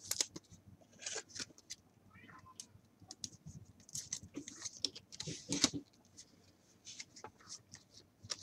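A trading card and a clear plastic sleeve being handled: a card is slid into the sleeve with irregular light clicks, scrapes and plastic rustles, busiest in the middle and near the end.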